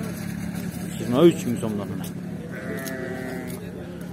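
Fat-tailed sheep bleating in a pen: one long bleat lasting about a second, starting near the middle, over a steady low engine hum.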